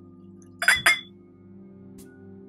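Two quick clinks of glass against glass in close succession, under a second in, as tulip-shaped tasting glasses are handled, over faint steady background music.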